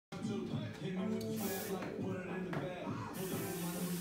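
Background music with held notes, and a couple of brief knocks partway through.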